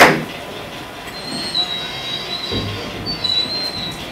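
A thump right at the start, then a thin, wavering high-pitched squeal for about three seconds, like train wheels squealing, from the model diesel train and its WOWDiesel sound decoder.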